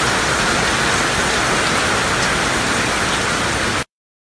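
Heavy rain falling during a storm, a steady, even hiss that cuts off suddenly just before the end.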